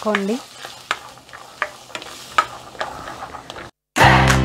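Spatula stirring diced vegetables frying in oil in a stainless steel pan: irregular scrapes and taps against the metal over a faint sizzle. The sound stops suddenly just before the end.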